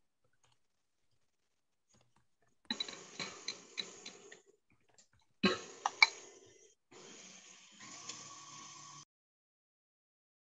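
KitchenAid stand mixer whisking whipping cream, with sharp clicks and knocks as a spatula scrapes and taps a ceramic bowl. The sound cuts in and out abruptly, with stretches of silence between short fragments.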